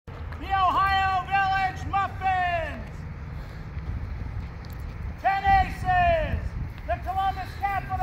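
A single voice shouting loudly in long, drawn-out calls that fall in pitch at their ends, in three bursts with a pause of about two seconds after the first.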